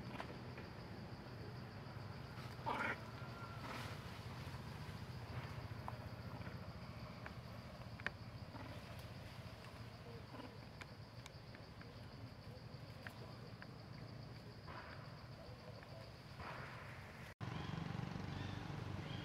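Faint outdoor ambience: a steady low hum and a thin, steady high tone, with one short, louder call about three seconds in and scattered small clicks.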